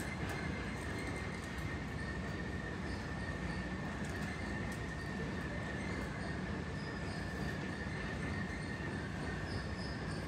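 Jet airliner's engines idling as it starts to taxi: a steady high whine over a low rumble, muffled by the terminal glass.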